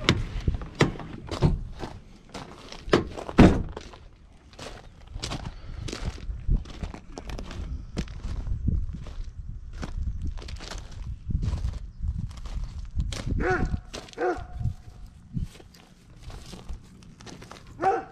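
Footsteps crunching on gravel, with a pickup truck door opening and shutting in a loud thunk about three seconds in. A dog barks a few times about three quarters of the way through and once more at the end.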